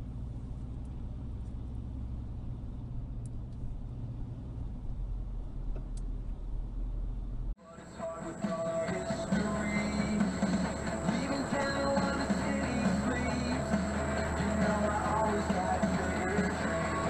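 A steady low drone of engine and road noise inside a car's cabin, which cuts off abruptly about seven and a half seconds in. After the cut, music plays.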